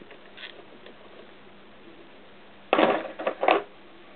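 A short metallic clatter of hand tools and small parts being handled, in two quick bursts about three seconds in, after a faint click near the start.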